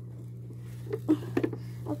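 A few short clicks and knocks, about a second in, of a hand taking hold of a plastic toy car, over a steady low hum.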